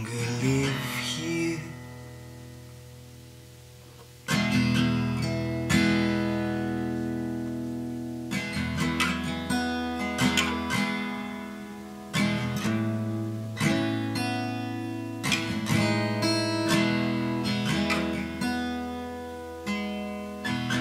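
Instrumental passage of a song: acoustic guitar chords strummed and left to ring and fade. One chord dies away over the first few seconds, then strumming resumes sharply about four seconds in, with a new chord every second or two.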